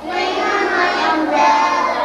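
Young children singing a song with sustained sung notes.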